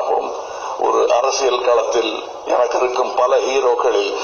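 A man speaking steadily into a handheld microphone, the voice thin with little low end.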